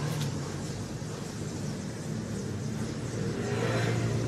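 Steady low rumble with an even hiss over it, background noise with no distinct event.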